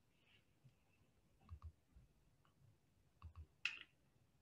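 Near silence with a few faint clicks, a pair about a second and a half in and a few more near the end.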